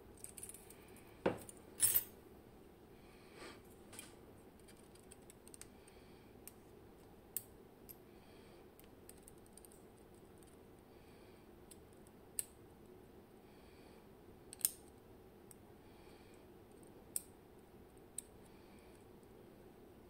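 Small metal clicks of steel tweezers and a pick working parts out of a Bowley lock's brass cylinder plug during disassembly. Two sharper clicks come a second or two in, then single small ticks every few seconds.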